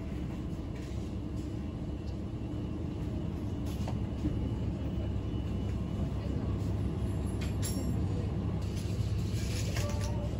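Steady low rumble and hum of a supermarket aisle, among refrigerated display freezers, with a few faint clicks and knocks.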